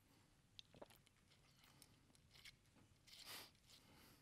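Near silence with faint handling noises from a water bottle: two small clicks a little under a second in, then a brief crackling rustle a little after three seconds as its cap is twisted back on.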